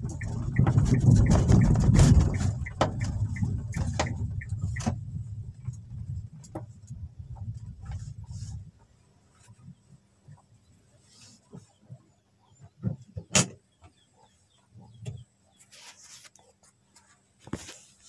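Inside the cabin of a 2012 Kia Rio hatchback: its 1400cc engine and road rumble while driving, loudest in the first couple of seconds, cutting off suddenly about nine seconds in. After that come scattered clicks and knocks of handling, the sharpest about thirteen seconds in.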